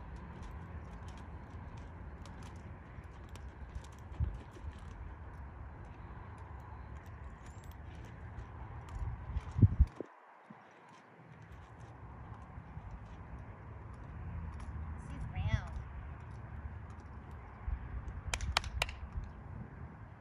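A ridden horse's hooves in soft arena sand as it moves and then comes to a stop, under a steady low rumble, with a loud knock about halfway through.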